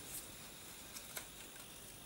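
Faint rustling of a square sheet of paper being folded by hand as a flap is brought over to the centre crease, with a few soft crackles of the paper, two of them about a second in.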